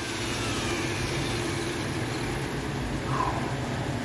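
Electric rotary car polisher running with a steady motor hum.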